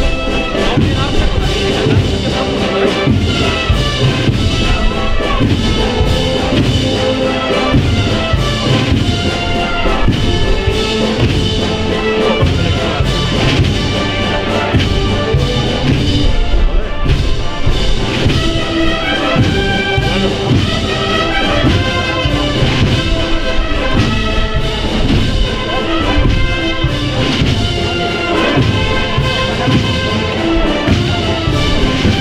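Spanish marching wind band (banda de música) playing a Holy Week processional march, brass carrying the melody over a steady low beat.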